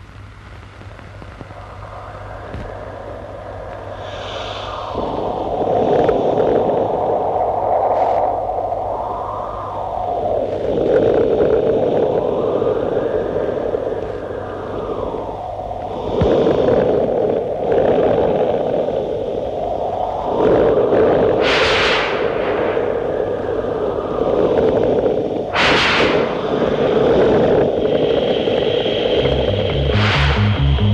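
Film storm effect: heavy rain rushing in swelling waves, with two sharp thunder cracks about four seconds apart near the end.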